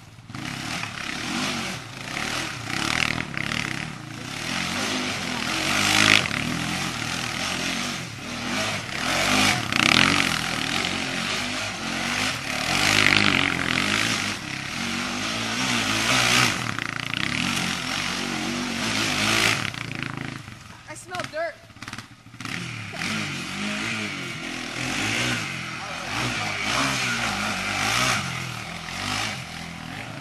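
Quad bike (ATV) engine running and revving as it is ridden hard around a dirt track, its sound swelling and fading as it passes close and moves away; it drops off briefly about two-thirds of the way through.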